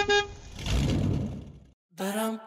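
Sound-effect car horn giving a quick double toot, followed by a rushing, rumbling noise of a car driving off that lasts about a second, then a short gap.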